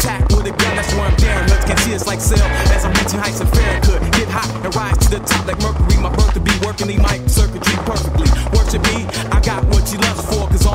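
Skateboard wheels rolling on concrete paving, with repeated sharp clacks of the board popping and landing during flatground tricks. A hip hop beat plays over it, with no vocals.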